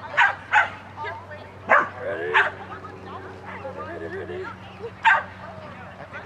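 A dog barking in short, sharp barks, five in all: two quick ones at the start, two more a little over a second later, and a last one near the end.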